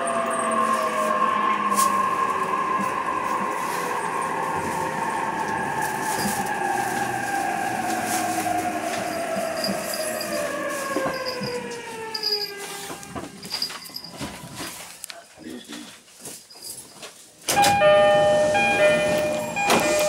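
Electric commuter train's traction motors whining as it brakes into a station, several tones falling steadily in pitch, fading out as the train comes to a stop about 13 seconds in. A few seconds later a sudden louder sound with several steady tones begins.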